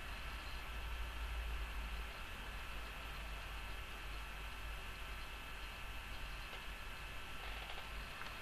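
Room tone from a recording microphone: a steady hiss and low hum with a faint high-pitched whine, the low rumble easing about two seconds in.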